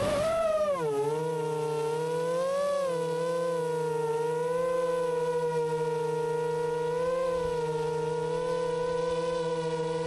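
Geprc Moz7 FPV quadcopter's motors and propellers whining, heard from its onboard camera. The pitch rises, drops about a second in as the drone slows, then holds steady with a few small swells as it hovers on low throttle.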